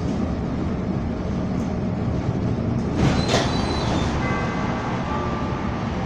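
Inside a CTA Blue Line rapid-transit car standing at a station: a steady low rumble from the car, a sharp click a little past halfway, then faint steady high-pitched tones through the second half.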